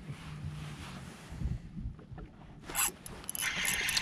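Quiet handling noise from an angler working a spinning rod: faint rubbing and scraping of jacket and gear, with a short rustle a little before three seconds. A louder scratchy rustle builds in the last half second as he sets the hook on a big fish.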